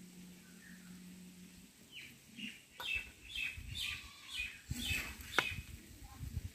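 A small bird chirping from about two seconds in, in a quick string of short falling notes, two or three a second, with low thuds beneath them.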